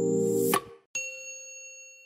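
Synthesizer music chord ending about half a second in with a short rising whoosh, then a single bright bell-like ding about a second in that rings on and fades: a subscribe-button sound effect.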